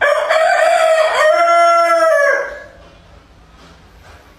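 Rooster crowing once, loud and close, a single long cock-a-doodle-doo of about two and a half seconds that starts abruptly and fades out.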